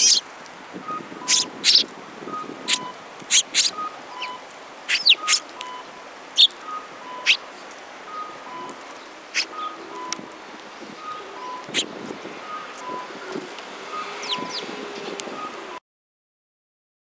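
Eurasian tree sparrows giving short, scattered chirps. Behind them a faint two-note electronic beeping alternates high and low at an even pace. The sound cuts off suddenly near the end.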